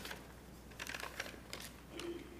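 Quiet room after the last sung chord has died away, with a few faint, scattered clicks and light rustles in the second half.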